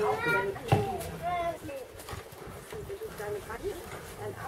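Indistinct background chatter of several people, including high-pitched voices like children's, with one short thump about three quarters of a second in.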